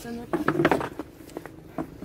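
People talking quietly, with a few light clicks and knocks.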